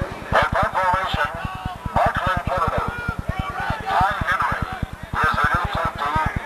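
Indistinct shouting voices in short bursts, with no clear words, over a steady low pulsing hum of about eight pulses a second.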